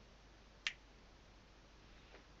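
A single sharp finger snap a little under a second in, against a quiet room: the hypnotist's cue sending the subject to a new moment in the regression.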